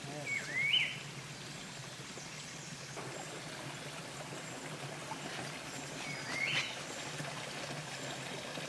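Forest ambience with a steady rush like running water. A bird calls twice, each call a short note that dips and then sweeps sharply up, once about half a second in and again about six seconds in.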